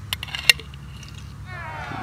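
A metal spoon clicking against a glass mason jar a few times as an egg is fished out of pomegranate-juice dye, the sharpest click about half a second in. Near the end a man's voice begins, sliding downward in pitch.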